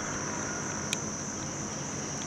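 Steady high-pitched insect chirring, with a single faint click about a second in.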